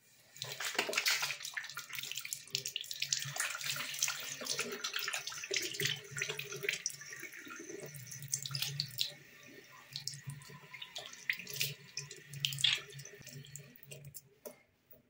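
A bathroom sink tap is turned on, and water runs and splashes into the ceramic basin as hands are washed under the stream. The flow is shut off at the end.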